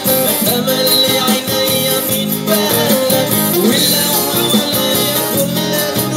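A man singing live into a microphone over guitar accompaniment, through a street busker's sound system.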